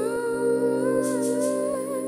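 Soft, slow background music: held chords under a wavering, voice-like melody.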